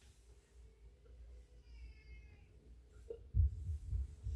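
Quiet sounds of a man drinking beer from a glass, with a few low thumps near the end.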